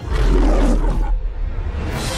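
Trailer sound-design hit: a sudden deep boom with a rush of noise on top that fades after about a second, over a low rumble that carries on.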